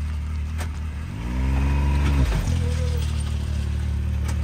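Can-Am Maverick X3 XRS side-by-side's turbocharged three-cylinder engine running low. About a second in it revs up once, holds for about a second, then drops back and runs steadily again.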